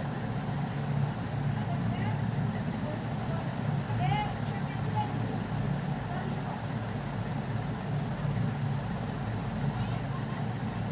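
Steady low background rumble with a few faint, distant voices.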